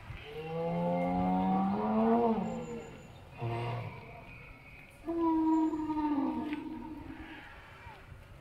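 Electronic dinosaur calls from an animatronic long-necked sauropod's loudspeaker: two long, deep calls, the first rising slightly in pitch before dropping off, the second sliding down at its end, with a short call between them.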